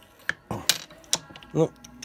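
JAWA motorcycle shock absorber being stroked by hand to test its damping after a refill with thicker compressor oil: three sharp clicks, about 0.4 s apart.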